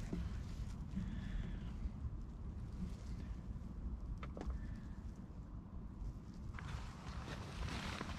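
Low rumbling handling and movement noise from a person shifting about in a muddy, waterlogged trench, with a couple of faint clicks about four seconds in and a rustle near the end.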